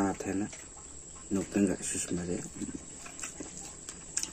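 A steady, high-pitched chirr of insects, most likely crickets, runs throughout, under a man's voice in a few short phrases during the first half.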